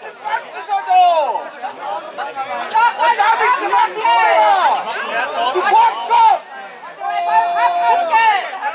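Many voices talking and shouting over one another, with a steady held tone lasting about a second near the end.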